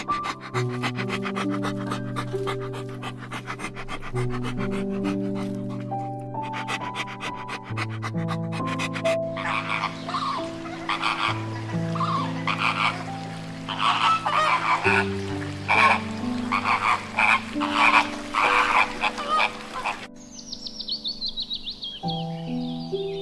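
Soft piano music with held chords runs throughout. Over it, bulldog puppies pant rapidly for the first several seconds. From about nine seconds a flock of flamingos gives repeated nasal honking calls, and near the end a guineafowl call comes in as a quick run of notes falling in pitch.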